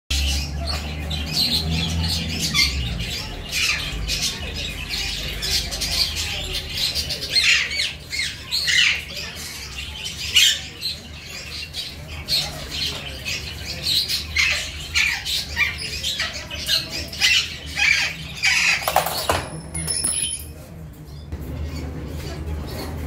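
Birds chirping and squawking over and over, many short calls overlapping, with a steady low hum underneath.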